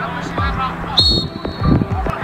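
Background music: a track with a steady bass-drum beat about twice a second and sung vocals, with a brief high tone about halfway through.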